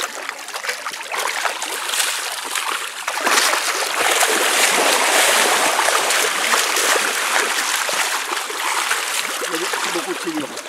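Shallow muddy water splashing and churning as a mass of large catfish thrash in it, the splashing getting louder about three seconds in.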